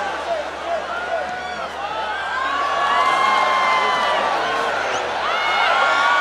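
Stadium football crowd, many voices shouting and yelling at once, swelling louder about halfway through as the attack nears goal.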